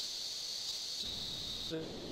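A sudden burst of static hiss with a high whistling band, lasting a little under two seconds and cutting off abruptly; a voice starts again faintly near the end.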